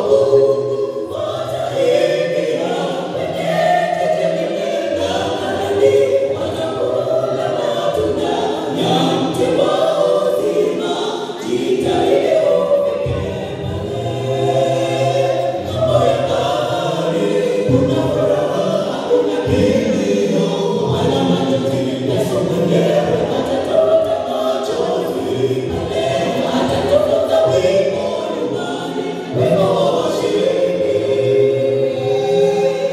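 Small mixed gospel vocal group of men and women singing a Swahili song in harmony, voices amplified through handheld microphones.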